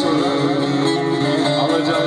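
Bağlama (Turkish long-necked saz) played solo: a quick plucked melody ringing over a steady drone.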